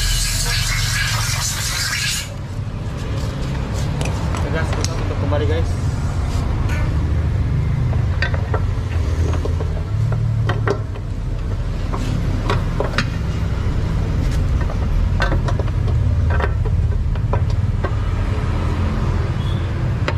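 Scattered light clicks and knocks as the CVT cover of a Honda PCX scooter is handled and fitted back onto the transmission case, over a steady low hum.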